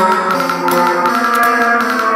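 Electronic dance music from a DJ set on CDJ decks: repeated pitched melodic notes over ticking hi-hats, with the bass cut out.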